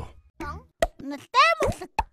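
A high-pitched, child-like voice says the drink ad's tagline 'Мундаг Маамуу' in a few quick, bouncy syllables. Short pops are heard between the syllables and at the end.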